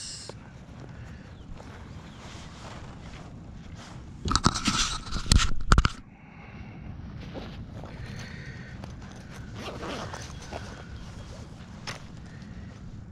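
A zipper on a pocket pulled open, a loud zip lasting about two seconds near the middle, amid quiet rustling and handling noise.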